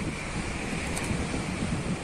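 Steady wind and ocean surf noise, with wind rumbling on the microphone.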